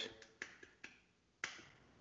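Near silence broken by a few faint, sharp clicks, the clearest about one and a half seconds in.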